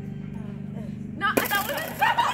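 A single sharp smack about one and a half seconds in as a thrown KanJam flying disc strikes something, with excited shouting breaking out around it.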